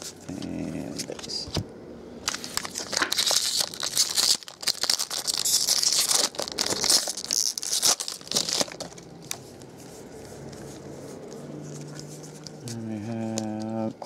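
Foil wrapper of a baseball card pack being torn open and crinkled: a dense run of sharp crackles for several seconds that dies away about nine seconds in.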